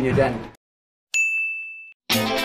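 A single bell-like ding rings out about a second in: one steady high tone that starts sharply, fades over most of a second, and is cut off short, an edited-in transition sound effect.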